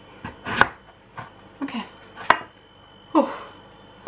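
Large kitchen knife chopping butternut squash into cubes on a cutting board: a handful of sharp knocks at uneven intervals.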